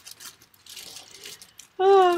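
Faint rustling of a plastic bag of mini marshmallows being handled, lasting about a second, with a woman's voice starting near the end.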